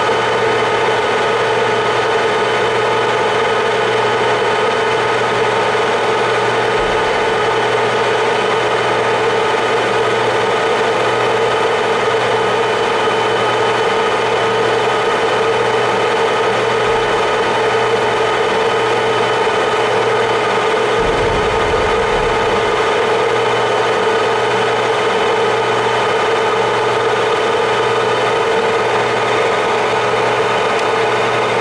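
Clausing Colchester 21 lathe running steadily at about 760 rpm with a constant-pitch gear hum while the tool takes a light finish cut, about five to six thousandths, on 4140 pre-hardened steel.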